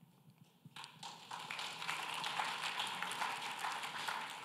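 Audience clapping, a dense patter of many hands that starts about a second in after a near-silent moment.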